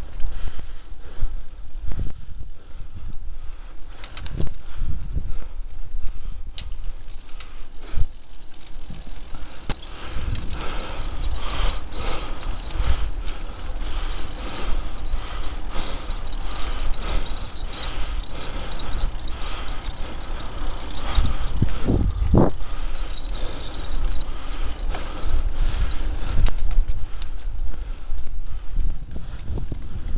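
A bicycle being ridden along a bumpy tarmac cycle path, its frame and parts rattling and knocking over the uneven surface, over a steady low rumble. Several sharper knocks stand out, the loudest about 22 seconds in.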